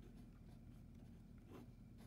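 Faint scratching of a Sharpie felt-tip marker writing on paper, with one stronger stroke about one and a half seconds in, over a low steady room hum.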